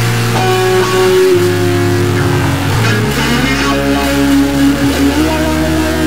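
Stoner rock instrumental intro: sustained electric guitar notes over a bass line that shifts every second or so, with a rising slide near the end, before the vocals come in.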